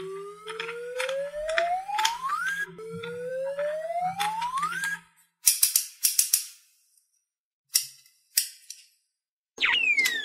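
Edited-in cartoon sound effects over toy play-dough play: two long rising whistle glides over a low hum, each ending about two and a half and five seconds in, then a quick run of sharp snip-like clicks about five and a half seconds in and two more single clicks. A falling whistle glide starts just before the end.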